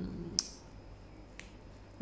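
Two short, sharp clicks in a quiet pause: the first, louder one about half a second in, and a fainter one about a second later.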